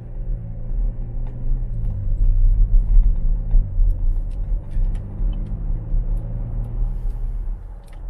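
A car's engine and road noise heard from inside the cabin as the car accelerates through an intersection. The engine note rises, drops at a gear change about two seconds in, rises again and then settles, over a heavy low road noise.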